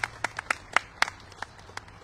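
Scattered hand claps from a small group of people, fading out and stopping near the end.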